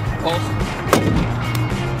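The driver's door of a 1997 Ford F350 ambulance cab is slammed shut once, about a second in, over steady background music.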